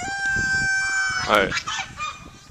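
A rooster crowing, ending on one long steady note of just over a second that then breaks off.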